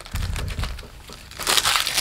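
Magic: The Gathering trading cards handled and leafed through by hand, the cards rubbing and sliding against each other, with a brief louder rustle about one and a half seconds in.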